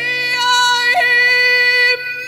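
A woman singing a copla, holding one long high note on a sustained vowel, with a brief catch in the pitch about a second in. The note breaks off near the end, over soft instrumental accompaniment.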